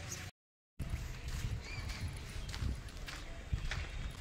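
Footsteps on a hard tiled floor and paving, an irregular run of light clacks, broken near the start by a brief gap of total silence.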